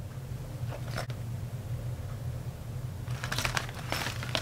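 Faint rustling and crinkling of a clear plastic waterproof zip pouch being handled, with a couple of soft clicks about a second in and more rustling near the end, over a steady low hum.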